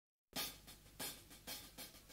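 Quiet, evenly spaced taps on a rock drum kit's hi-hat, about two clear strikes a second with softer ones between, after a brief silence at the very start.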